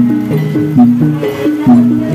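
Live Javanese jaranan dance accompaniment music: a repeating melody of short pitched percussion notes over drum strokes, with a strong accented beat about once a second.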